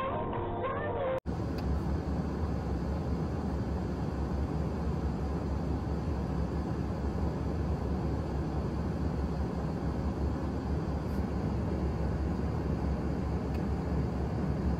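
Background music cuts off about a second in, giving way to a steady outdoor noise with a heavy low rumble.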